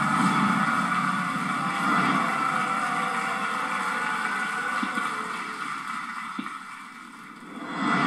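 Studio audience cheering, heard through a television speaker as a steady wash of noise that fades away about six to seven seconds in.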